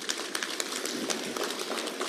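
Audience clapping: scattered claps that build gradually, getting denser and louder.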